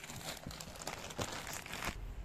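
Clear plastic bag crinkling and rustling as hands handle and unwrap it, an irregular run of crackles.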